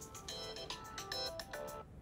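Mobile phone ringing with a faint electronic ringtone melody of short, quickly changing notes; it stops near the end.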